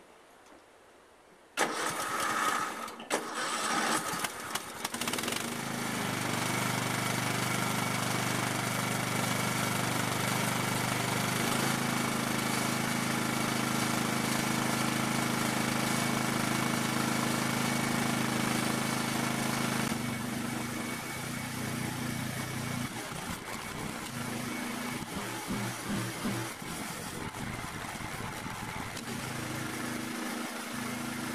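Lawn tractor's Kohler engine starting about a second and a half in, uneven for a few seconds, then running steadily. It runs louder from about twelve seconds in and drops back lower and less even after about twenty seconds.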